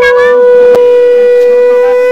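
Conch shell (shankha) blown in one long, steady, loud note, as is customary in Bengali worship when the Kali idol is brought in.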